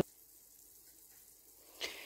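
Very faint simmering of a bacon-and-onion broth in a frying pan as it starts to boil, close to silence. There is a brief soft noise near the end.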